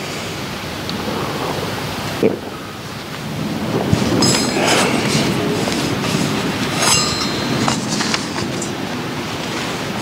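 Communion vessels being cleaned at the altar after communion: a steady rustling and rubbing, with several sharp metal and glass clinks about two seconds in, around four to five seconds, and about seven seconds in.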